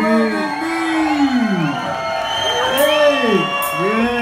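Live vocalists singing long swooping notes that rise and fall through the PA while the band drops out, with the crowd cheering and whooping.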